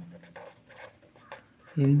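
Felt-tip pen writing on paper: faint scratchy rubbing of the tip as a word is written out.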